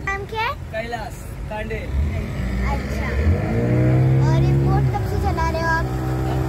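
A boat engine running under way, its pitch rising about three seconds in as it speeds up and then holding steady over a low rumble.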